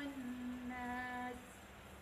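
A woman's voice holds one steady nasal hum for about a second and a half. This is the two-count ghunnah (dengung) of Quran recitation, held on a doubled nun.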